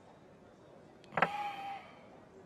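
A small porcelain wine cup set down on a table: one sharp knock with a brief ringing tone, about a second in.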